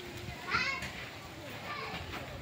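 Children's voices in the background, with one louder call about half a second in.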